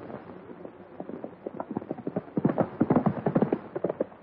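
Galloping horse hoofbeats, a rapid run of knocks that grows much louder about two seconds in.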